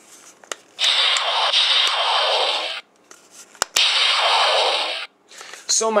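Diamond Select Star Trek II hand phaser toy playing its electronic sound effect twice through its small built-in speaker. The first is a hissing, static-like blast of about two seconds starting about a second in; after two sharp clicks, a second, shorter blast follows.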